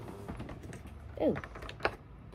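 Light clicks and taps of fingers handling an opened cardboard advent calendar door and the small figure behind it, with a sharper click near the end.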